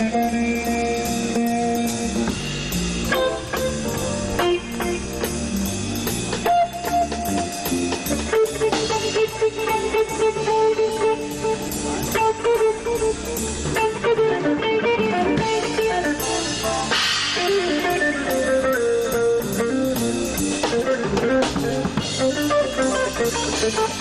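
Live blues shuffle-boogie band playing an instrumental break: electric guitar carrying a single-note lead line over drum kit and bass.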